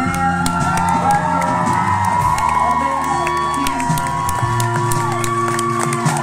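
Live band music with steady held low notes, with a crowd cheering and whooping over it.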